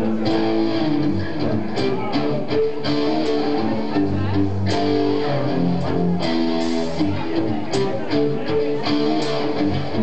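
Live band of electric guitars playing an instrumental passage of held, sustained notes with sharp strikes scattered through it.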